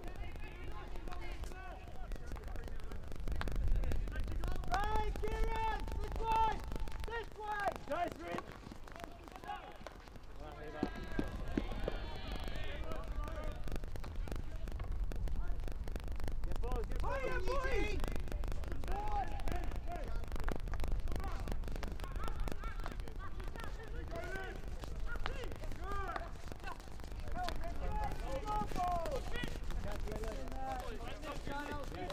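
Field hockey players shouting short calls across the pitch, with sharp cracks of sticks striking the ball scattered throughout.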